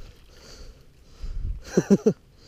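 A man's short, breathy laugh near the end, after a second of faint low rumble.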